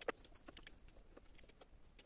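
Faint, scattered clicks and light taps of a hex driver and small plastic and metal parts being handled at an RC crawler's front axle while it is taken apart, with one sharper click right at the start.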